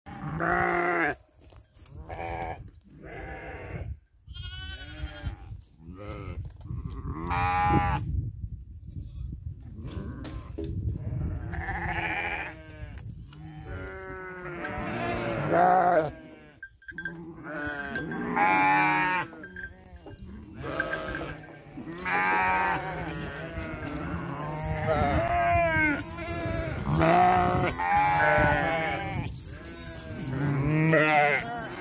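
Flock of sheep bleating, many calls overlapping one after another with hardly a pause, each call quavering.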